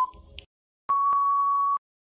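Electronic quiz countdown-timer beeps: a short tick at the start, the last of a once-a-second series. About a second in comes a longer steady beep lasting nearly a second, signalling time up before the answer is revealed.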